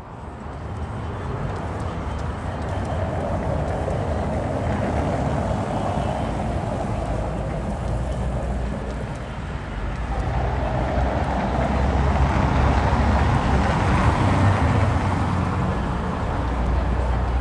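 City street traffic: a steady low rumble of vehicles that fades in at the start and swells louder twice, once in the first half and again near the end, as traffic passes.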